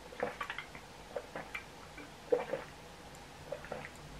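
A person gulping a cold bottled mocha coffee drink straight from the bottle: a string of short, irregular swallows, bunched together at first and more spaced out later.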